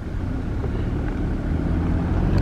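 Car engine and tyre noise heard from inside the cabin as the car rolls slowly along: a steady low hum that grows slightly louder.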